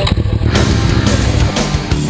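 Motorcycle engine running, then heavy rock music with a driving drum beat coming in about halfway through.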